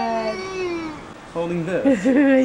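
An infant crying: one wail falling in pitch and fading, a short lull, then a new wavering wail starting in the second half.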